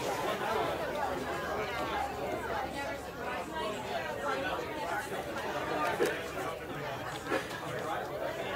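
Chatter of a seated audience: several people talking at once, no single voice standing out. A short sharp knock comes about six seconds in.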